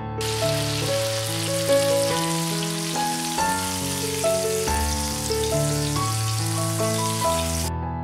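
Hot oil sizzling steadily in a stainless steel frying pan as food fries, over soft piano music. The sizzle starts just after the beginning and cuts off suddenly near the end.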